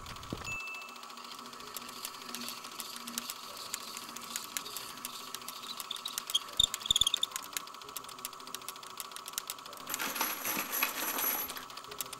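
Rapid run of small metallic clicks and ticks, with a brief tinkling jingle about six to seven seconds in, over a faint steady tone.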